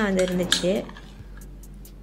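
A woman's voice for the first moment, then a spoon clinking and scraping faintly against a small glass bowl in a few light ticks as thick green slime is scooped and lifted out.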